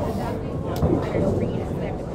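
Candlepin bowling alley: a low rumble of a small ball rolling down the wooden lane, with background chatter and a few faint knocks.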